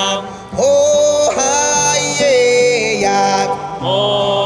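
A man singing a slow melody in long held notes, accompanied by a nylon-string classical guitar, with a brief pause in the voice about half a second in.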